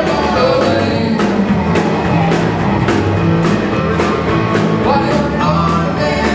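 A live blues band playing: electric guitar and a drum kit keeping a steady beat under low bass notes, with a woman singing.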